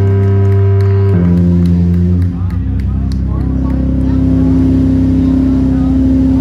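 Live heavy rock band playing loud, held notes on distorted electric guitar and bass. The chord changes about a second in and again about two seconds in, then settles into one long sustained note.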